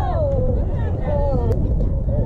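Several young voices calling and cheering over a steady rumble of wind on the microphone, with one sharp click about one and a half seconds in.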